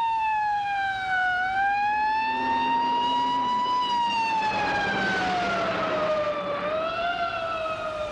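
Emergency vehicle siren wailing, its pitch sliding slowly down and up in long sweeps of a few seconds each. It signals what is taken for a big accident ahead.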